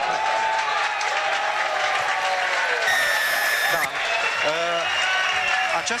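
Stadium crowd cheering and applauding a successful long-range rugby drop goal, with voices shouting over the noise. About three seconds in, a shrill steady tone sounds for about a second.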